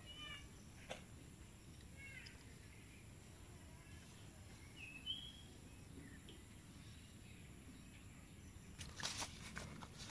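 Quiet outdoor background with a few faint, short bird chirps. About nine seconds in comes a cluster of crackling rustles as the caught tilapia is handled on grass and leaves.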